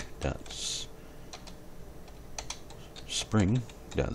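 Typing on a computer keyboard: a scattering of separate key clicks as a bone name is entered.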